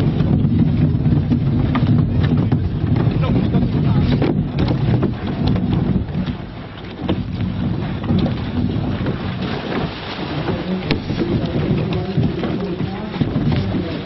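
Wind rumbling on the microphone, heaviest in the first half, with indistinct voices in the background.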